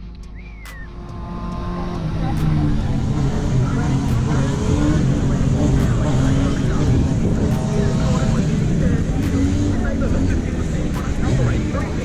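A car engine running steadily, with people talking in the background.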